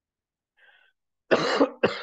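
A man coughs twice, a longer cough a little over a second in and then a shorter one just after it.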